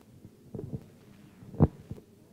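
A brief lull with faint low sounds, then a single short, dull thump near the end.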